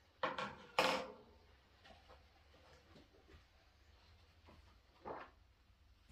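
Handling sounds of a red plastic funnel and a rubber balloon being worked together by hand: two short knocks and rubs in the first second, faint ticks, and another short one about five seconds in.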